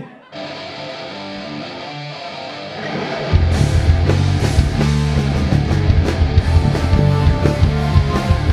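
Live rock band starting a song: a quieter instrumental intro, then about three seconds in the full band comes in loudly with drums, bass and electric guitars.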